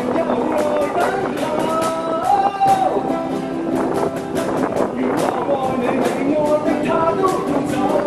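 Live acoustic busking music: a strummed acoustic guitar and a cajón keeping a steady beat under a male voice singing a Cantopop ballad.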